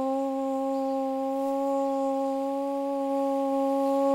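A woman's voice holding one long, steady hummed note into a microphone, leading into a mantra chant.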